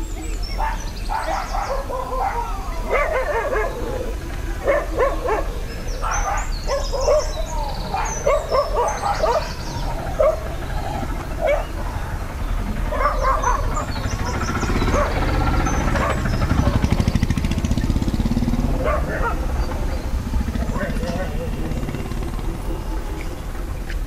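Voices and a dog barking, with many short calls scattered through the first two-thirds, over a steady low rumble.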